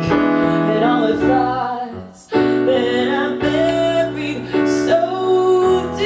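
A woman singing live while accompanying herself with piano chords on a keyboard. The music drops away briefly about two seconds in, then picks up again.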